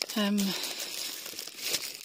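Rustling and handling noise of packed gear being rummaged through in a full car roof box, continuous and irregular, after a brief spoken 'um' at the start.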